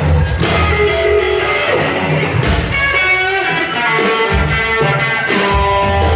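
Live blues band playing: electric guitar over bass and drums. The bass drops out for about two seconds midway, leaving the guitar notes on their own.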